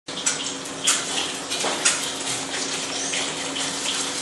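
Water running from a kitchen tap into a metal sink, with a few sharp clinks of kitchenware.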